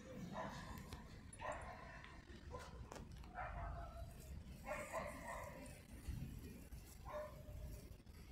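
A dog barking about six times, faint, with irregular gaps between the barks.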